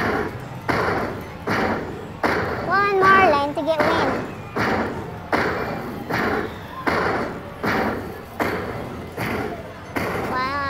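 Ultimate Fire Link slot machine sounds during its hold-and-spin feature: a thud about every three-quarters of a second as the open positions respin, with a short warbling tone about three seconds in.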